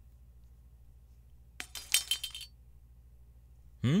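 A pocket watch dropped onto a hard surface, clattering in a quick run of sharp metallic clinks lasting under a second, about halfway through.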